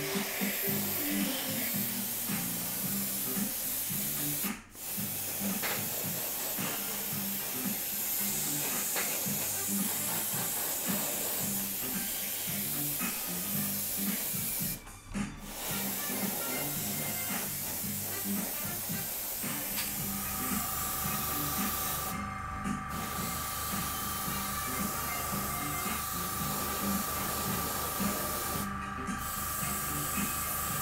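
Airbrush spraying black primer at about one to one and a half bar, a steady hiss that stops briefly twice. About two-thirds of the way through, a steady low hum and a thin whine join it.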